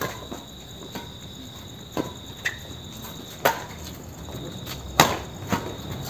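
Badminton rackets striking the shuttlecock in a fast rally: about six sharp smacks, some in quick pairs, the loudest about five seconds in. Crickets chirr steadily underneath.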